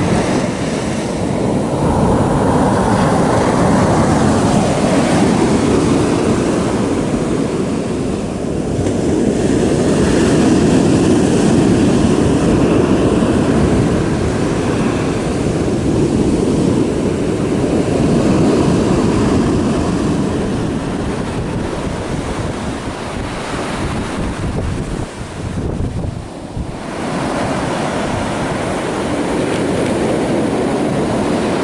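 Ocean surf breaking and washing up a sand beach, a steady rushing noise that swells and eases every few seconds, with wind rumbling on the microphone.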